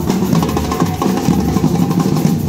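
A drum troupe beating large marching bass drums with soft mallets, together with smaller side drums, in a loud, steady, driving rhythm.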